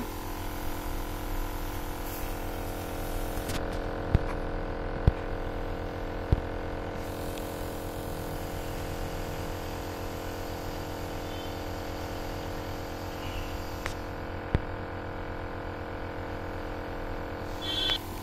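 Steady electric motor hum with a buzzy edge, with a few light clicks of a plastic ampoule being handled.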